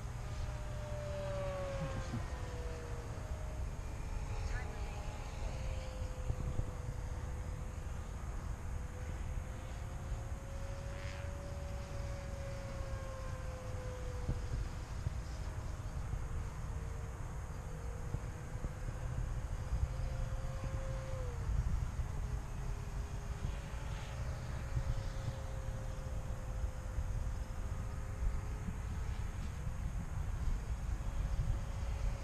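Electric RC P-51D model's motor and propeller whining in flight on a 3-cell LiPo pack, the pitch slowly rising and falling as the plane circles the field, with a sharp drop about two-thirds of the way through. A steady low rumble lies beneath it.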